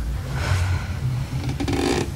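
Low, steady background rumble, with two brief soft rustles of clothing as a woman shifts on a sofa, about half a second in and again near the end.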